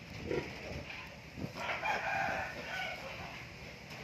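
A rooster crowing once, a drawn-out call of about a second and a half starting near the middle.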